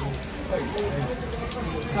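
Heavy rain falling steadily on pavement, a constant hiss with a low rumble beneath it, with faint voices talking in the background.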